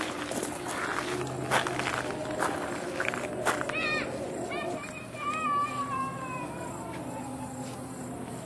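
Faint voices of people in the background, with a few sharp clicks in the first half and one long falling call about five seconds in.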